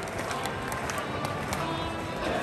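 Football stadium crowd in the stands: thousands of fans' voices blending into a steady din, with scattered short claps or knocks through it.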